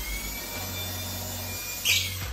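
Cordless drill-driver running under load, driving a screw into the wooden divider of a plywood cart, with a steady motor whine. A brief, louder burst comes near the end.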